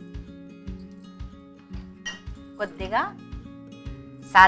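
A metal spoon clinking against a small steel bowl and a steel mixer-grinder jar as spices are spooned in, over background music with a steady beat.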